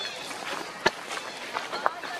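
Indistinct voices talking in the background, with two sharp clicks about a second apart, the first a little before the middle.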